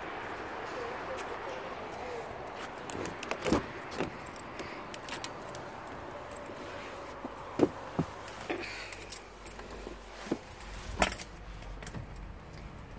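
Scattered clicks, knocks and rattles of handling as a car's driver door is opened and someone climbs into the seat, over a steady outdoor background hiss; a low hum comes in a little past the middle.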